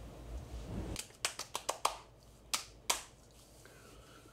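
Towel rubbing over the face, then bare hands slapping a freshly shaved scalp: five quick sharp pats about a second in, then two more.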